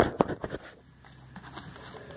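A few sharp clicks and a rustle of things being handled in the first half second, then faint room tone with a low hum.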